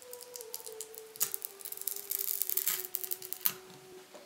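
Plastic clicks and scraping as the head housing of a Canon Speedlite 600EX-RT flash is worked apart by hand: a rapid run of sharp clicks and rubbing, thickest about two seconds in.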